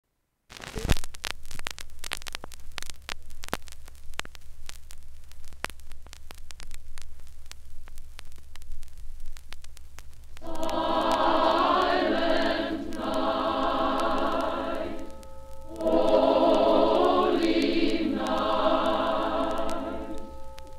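A record stylus sets down on the lead-in groove of a 1951 mono LP with a click, followed by about ten seconds of crackle and surface clicks over a low rumble. A women's choir then comes in, singing held chords in phrases with short breaks.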